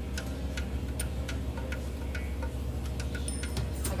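Hot frying grease popping and crackling: sharp, irregular pops a few times a second. Under it runs a steady low hum from a washing machine.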